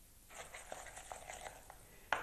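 Faint handling sounds of kitchen utensils at a counter: a few light clicks and scrapes.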